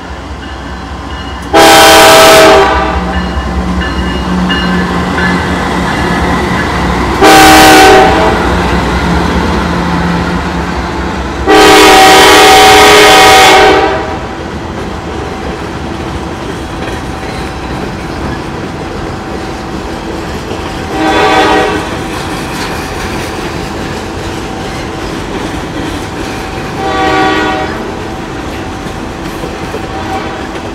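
A Norfolk Southern diesel locomotive's multi-chime air horn sounds three loud blasts, about a second, a shorter one, then a long one of about two seconds, over the low drone of the engine passing. Then the freight cars roll by slowly with steady wheel rumble and clatter, the train restricted to about 5 mph over a freshly patched sinkhole, and two fainter, shorter horn blasts sound later.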